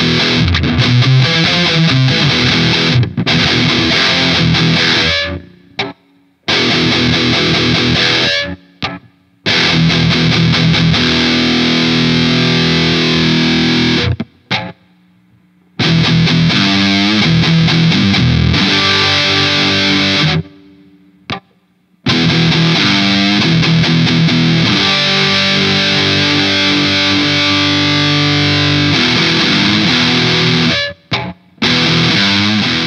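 Vola OZ super strat electric guitar played through a distorted, high-gain tone: rhythm riffs and chords that stop dead into silence several times before starting again.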